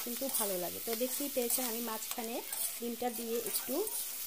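Vegetables and egg frying and sizzling in a metal wok while a metal spatula stirs them, with short scrapes of the spatula against the pan.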